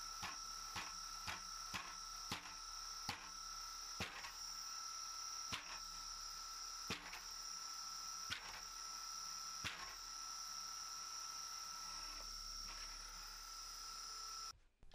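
Faint steady high whine from the brushless-motor-driven gyro flywheel spinning at speed. Over it come light sharp clicks from the tilt mechanism as the actively controlled gyro moves to damp the rocking, about twice a second at first and then spreading out to every second or so before they stop.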